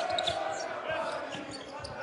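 Basketball being dribbled on a hardwood court, repeated bounces over the steady murmur of an arena crowd.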